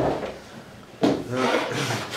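A book and laptop shifted on a wooden lectern, then about a second in a person blowing their nose into a tissue, a loud rasping blow lasting most of a second.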